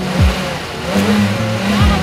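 A Chevrolet Malibu's engine starting on a jump start from another car and revving. Music with deep bass hits plays over it.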